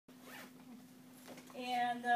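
A woman's voice holding one long sound at a level pitch, starting about three-quarters of the way in, over a faint steady hum.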